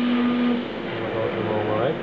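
CNC vertical milling machine running: a steady humming tone cuts off about half a second in, the overall level drops, and a lower steady machine hum carries on.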